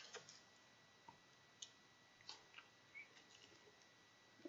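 Near silence with a few faint, scattered clicks and taps: cigars and their packaging being handled.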